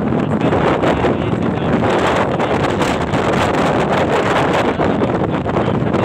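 Wind buffeting the microphone from a moving road vehicle, a loud steady rush mixed with road and engine noise.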